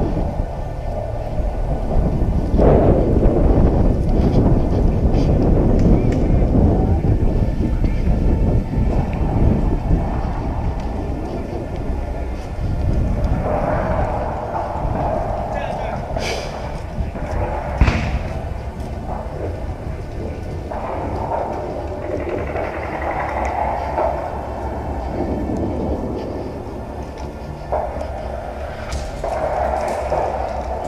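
Wind buffeting a head-mounted action camera's microphone while walking outdoors, heaviest in the first third, with indistinct voices in the background. Two sharp clicks come about 16 and 18 seconds in.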